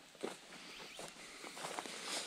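Quiet outdoor background with a few faint, short ticks and rustles.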